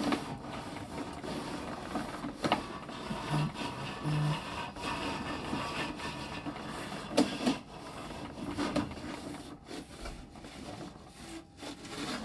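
Sewer inspection camera's push cable running through its reel as the camera is moved along the line: a continuous rubbing, scraping rustle with occasional sharp clicks.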